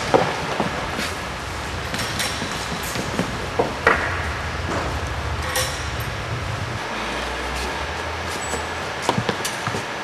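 Steady room noise with a low hum and scattered short knocks and clicks.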